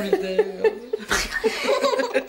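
Laughter in short, choppy pulses, with a breathy burst about a second in.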